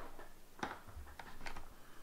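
Faint clicks and a soft knock of a USB flash drive being plugged into a port on a USB hub on a desk.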